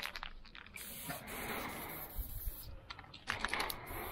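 Aerosol spray paint can hissing steadily for about two seconds as paint is sprayed onto the wall, with a run of quick clicks near the end.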